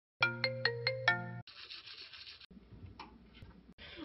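Electronic phone chime, five quick bell-like notes within about a second, followed by about a second of scratchy scrubbing noise and then faint rustling.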